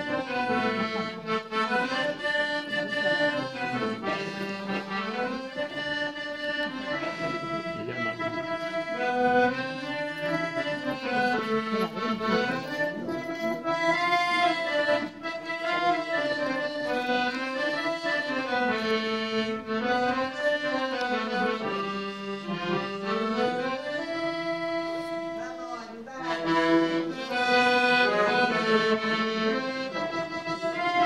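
Solo accordion playing a flowing melody over chords, dipping briefly and then coming back louder near the end.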